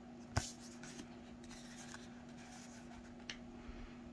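Tarot cards handled in the hand, one card moved off the front of the fan: a sharp click just after the start, soft sliding, and a lighter tick near the end, over a steady low hum.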